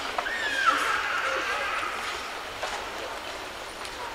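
A drawn-out vocal cry that falls in pitch during the first second and a half, over the steady murmur of a large indoor crowd, with a couple of faint knocks.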